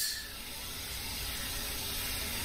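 Steady background hiss with no distinct events in it.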